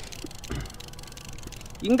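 Penn Senator conventional fishing reel being cranked, with faint mechanical ticking from its gears over steady wind and water noise. There is a short low thump about half a second in.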